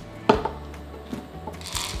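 Plastic cups handled on a wooden tabletop: a sharp knock shortly after the start, a few light clicks, then a brief rattle of small beads near the end.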